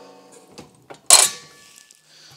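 Harbor Freight benchtop sheet metal brake and a freshly bent sheet-metal panel: a metallic ring fading over the first half second, then a single sharp metal clank about a second in, with a short ring after it, as the bent piece is freed from the brake.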